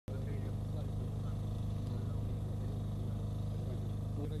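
A steady, low engine hum, running at an unchanging pitch, with people's voices talking faintly over it.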